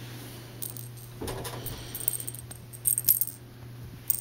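A small bell jingling in short bursts, about four times, as a kitten bats and wrestles a toy, with soft rustling thuds of the play; a steady low hum runs underneath.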